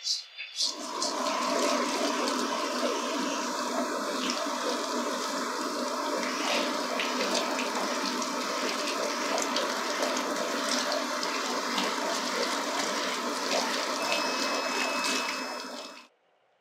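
Water from a handheld salon shower sprayer rinsing hair over a wash basin: a steady rush that starts about half a second in and cuts off just before the end.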